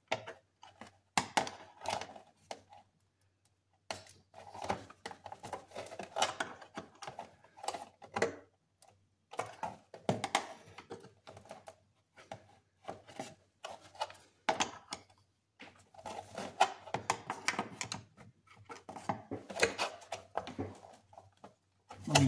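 Screwdriver prying and scraping at a stuck thermostat in its housing on a Ford 3.5L EcoBoost engine: a run of irregular clicks, taps and short scrapes in clusters, with the thermostat not yet coming free.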